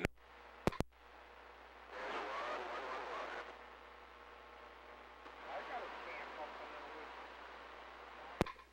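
CB radio with a dropped transmission: sharp clicks as the station falls off the air, then low static with faint, garbled voices under it. The operator puts the drop down to his foot slipping.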